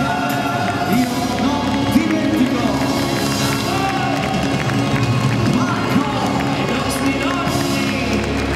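Live band with a horn section playing a held chord that breaks off about a second in, then music carrying on as a crowd cheers and shouts.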